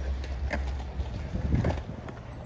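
Wind rumbling on a phone microphone with steady outdoor hiss, broken by a few faint clacks of skateboards and distant voices.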